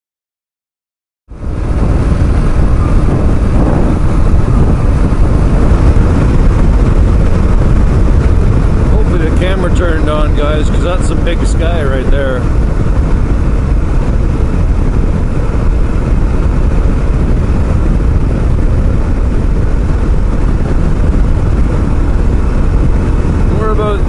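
Silence for about the first second, then a dual-sport motorcycle cruising at highway speed, heard from the rider's position: a loud, steady rush of wind on the microphone over the engine and tyres. A voice is briefly heard about ten seconds in.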